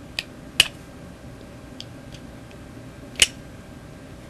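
A few sharp plastic clicks and snaps, with fainter ticks between, from hands working a bolt through a hole in a plastic water-bottle cap. The two loudest clicks come about half a second in and near the end.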